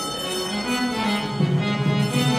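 Harmonium playing a bhajan melody in held, reedy notes, with mridangam strokes heard over it in the second half.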